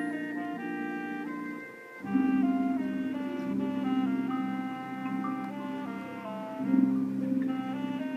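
High school marching band playing: the winds hold sustained chords while a melody moves above them. The sound dips briefly just before two seconds in, then the full band comes back in louder.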